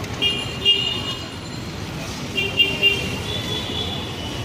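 Busy street traffic with vehicle horns honking: steady-pitched toots sound shortly after the start, again around the middle, and once more near the end, over a constant rumble of traffic.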